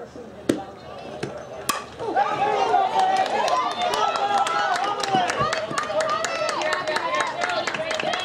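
Softball bat striking the pitched ball with a single sharp crack just under two seconds in, after a fainter click. Players and spectators then break into shouting and cheering, with scattered clapping.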